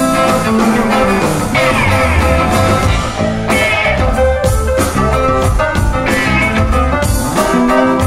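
Live blues-rock band playing an instrumental passage: electric guitars over bass guitar and drums, with no vocals.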